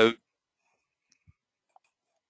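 The last of a spoken word, then near silence with two faint, short clicks close together in the second half.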